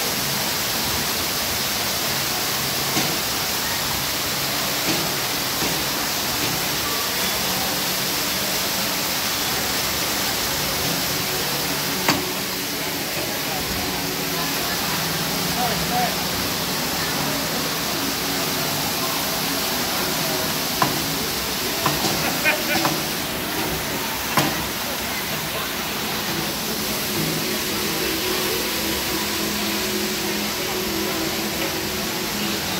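Steady rush of splashing water from a fountain's arcing jets and cascades, with indistinct crowd voices underneath and a few short sharp knocks, mostly in the second half.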